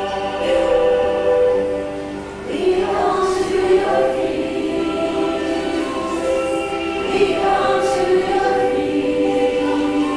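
Choir singing a hymn, several voices holding long notes that change every second or so.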